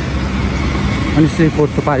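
Street traffic: a steady low engine rumble from passing motor vehicles. A man starts talking over it about a second in.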